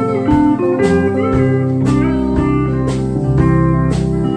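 Pedal steel guitar playing held, chiming chords, with notes sliding up and down in pitch, over bass and drums keeping time with regular strikes.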